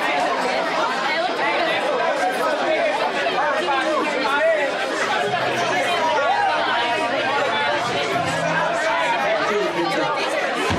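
A crowd of concertgoers talking and shouting over one another between songs, many voices at once. A low steady tone comes in about halfway through.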